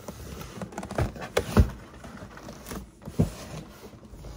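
A large cardboard box being handled and tipped on a countertop: several sharp knocks of cardboard against the counter, about a second in, again at a second and a half, and near three seconds, with scraping and rustling between.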